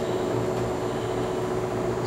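Parker-Majestic internal grinder running with its workhead just switched on: a steady electric-motor hum with a low tone and a higher whine over it.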